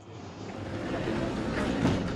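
A rush of noise that swells steadily louder, with no tone or rhythm in it.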